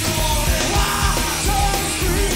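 Live hard rock band playing: distorted electric guitar, bass and drums with a steady pounding beat, and vocals sung and shouted over the top.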